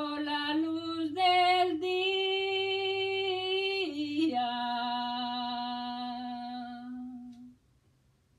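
A woman singing a Spanish praise hymn unaccompanied, holding long drawn-out notes that step up and down in pitch. She ends on a long low note that fades out near the end.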